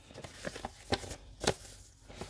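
Paper instruction sheet being unfolded and handled: soft rustling with a few small crackles, the sharpest about one and one and a half seconds in.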